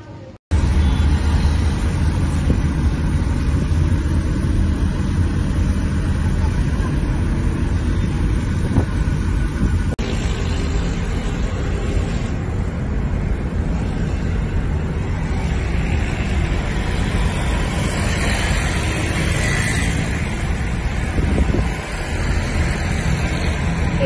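Wind from the open windows of a moving car buffeting the microphone, over the low rumble of the car on the road. It cuts in sharply about half a second in and then stays steady and loud.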